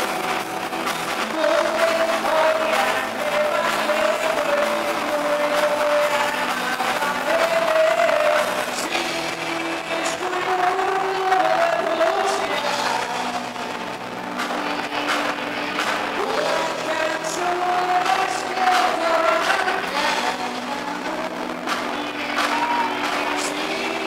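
A live band playing in a large hall: a singer's sustained, gliding melody over guitar and drums.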